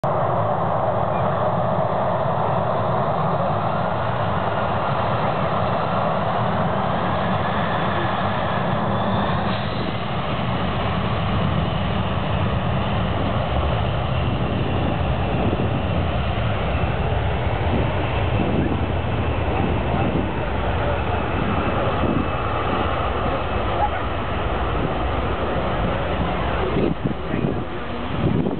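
Jet engines of an Air France Airbus A340 running at taxi power as the airliner manoeuvres at the runway's end: a steady rushing noise with a high whine that glides in pitch about nine seconds in.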